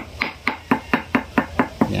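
Stone pestle knocking in a stone mortar, crushing an aspirin tablet: quick, even knocks, about four to five a second.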